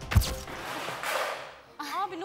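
Edited-in TV transition sound effect: a sharp, deep thud about a quarter of a second in, followed by a whoosh lasting about a second. A voice starts near the end.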